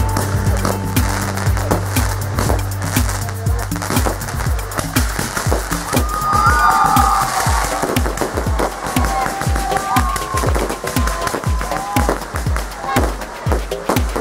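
A fireworks display: a rapid run of shell bursts and crackling reports, several a second, with music playing alongside.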